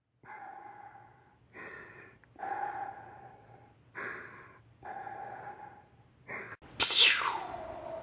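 A person breathing heavily in and out, six rasping breaths in the manner of Darth Vader's respirator. Just before seven seconds in comes a lightsaber ignition effect: a sharp swoosh falling in pitch that settles into a steady electric hum.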